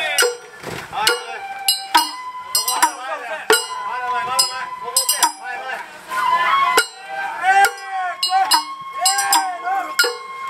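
Festival float hayashi music. Sharp, ringing metallic strikes come one to a few a second, under held and wavering high notes like a bamboo flute.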